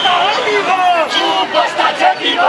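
A crowd of protest marchers shouting together, many loud voices overlapping.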